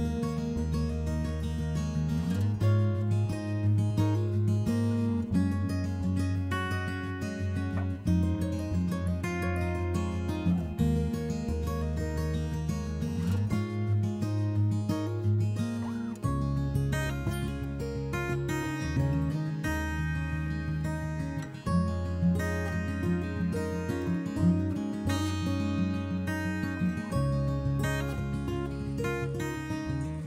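Background music played on acoustic guitar, with a steady run of chords and notes.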